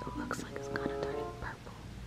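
Whispered speech, quiet and breathy, over soft background music.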